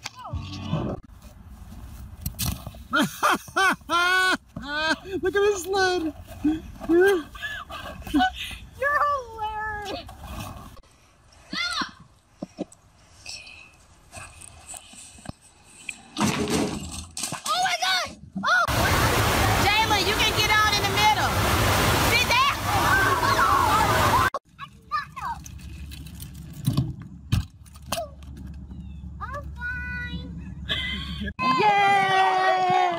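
Voices with no clear words, high-pitched calls and cries in short bursts. A loud stretch of rushing noise mixed with voices lasts about five seconds past the middle.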